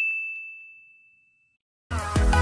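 A bright, bell-like notification ding from a subscribe-button sound effect, ringing out and fading away within about a second, with a few faint clicks under it.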